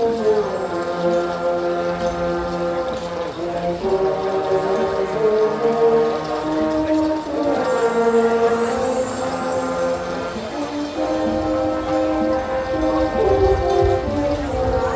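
Brass marching band playing slow, sustained chords that change every few seconds.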